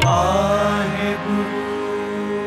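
Sikh shabad kirtan music: two harmoniums hold a steady chord that slowly fades, with a sung note sliding down right at the start and no tabla strokes.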